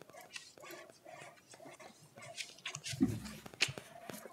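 Footsteps and handling noises of a person walking up to a podium, with scattered soft clicks and a brief low voice sound about three seconds in.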